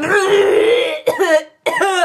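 Voice-acted coughing and gagging from a sick character bent over a metal trash can: one fit of about a second, then a shorter one.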